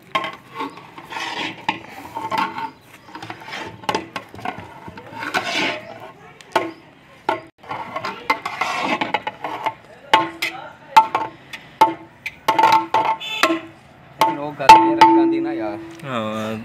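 A metal ladle scraping rice and knocking against the rim of a large aluminium degh. Each knock sets the pot ringing at the same pitches. The loudest knock, near the end, rings longest.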